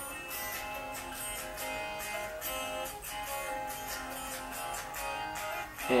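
Phone voice-memo recording of acoustic guitars played back from the phone: one guitar's part with a second guitar playing the main riff right on top of it, the song's first rough sketch.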